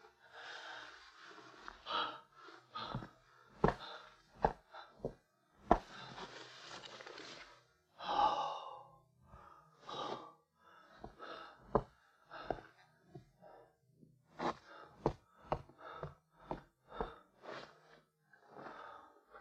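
A man breathing heavily with sighs and gasps, one louder voiced gasp about eight seconds in, over scattered small knocks, thuds and rustles of things being handled.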